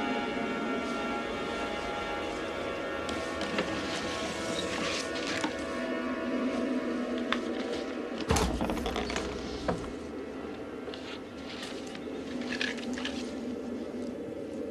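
Tense film score of sustained tones, with scattered small clicks and rustles; a loud dull thump about eight seconds in.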